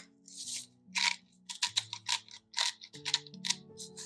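Hand spice grinder being twisted to grind salt and pepper, a quick run of short crunching clicks.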